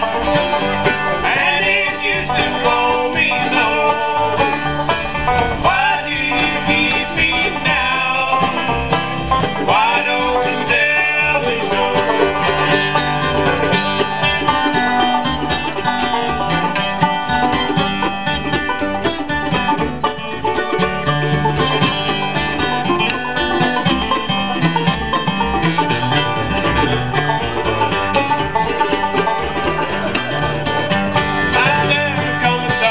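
Live bluegrass band playing on banjo, mandolin, acoustic guitar and upright bass, with the banjo standing out.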